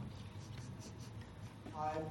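Faint scratching of a stylus writing on a pen tablet: a few short strokes. A man's voice resumes near the end.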